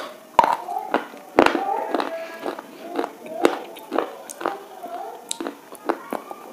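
Sharp, irregular crunches and snaps as a thin, hard black stick is bitten and chewed close to the microphone, with the loudest cracks about half a second and a second and a half in.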